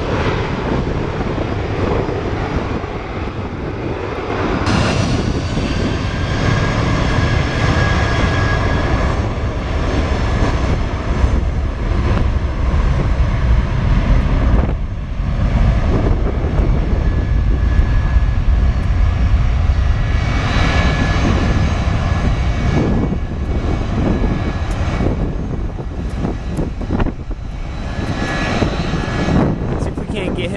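Jet airliner engines on an airport's runways and taxiways, heard as a loud steady rumble, with a high engine whine that comes in about five seconds in and again around twenty seconds.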